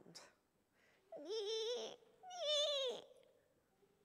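A woman's voice imitating the awful squeal of a runt piglet: two wavering, whining cries about a second apart, the second falling away at its end.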